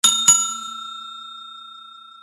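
A bell sound effect for the notification-bell icon: two quick bright dings about a third of a second apart, then a long ring that fades away slowly.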